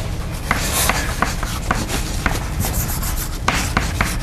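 Chalk writing on a chalkboard: scratchy strokes broken by sharp taps as the chalk strikes the board, over a steady low hum.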